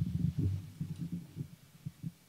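Microphone handling noise: a quick run of irregular low thumps and rumbles, with nothing in the upper range, easing off near the end.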